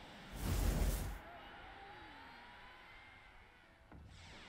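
Whoosh transition sound effect about half a second in, lasting under a second. It trails off into a faint background with thin sliding tones.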